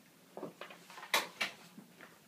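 Several light knocks and clicks, the two loudest sharp ones coming close together a little after a second in.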